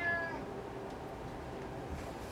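A house cat meowing: one call that trails off within the first half-second.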